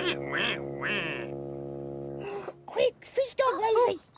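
Three short quacks in the first second or so, from the toy duck character, over a steady held chord of children's TV music that stops about two seconds in. A puppet character's chattering voice follows near the end.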